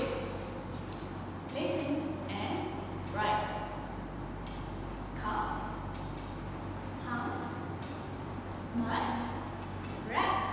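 A woman speaking in short phrases with pauses between them, over a steady low hum.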